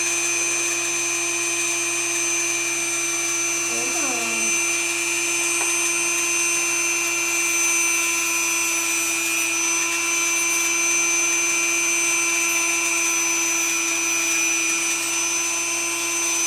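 Dremel rotary tool running with a steady whine while its sanding drum files down a great horned owl's talon, shortening and blunting it.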